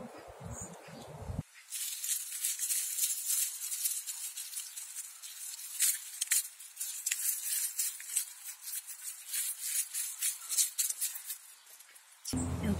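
Plastic glove crinkling and rustling as a gloved hand stirs manure pellets into loose potting soil: a dense, irregular run of small crackles and scrapes.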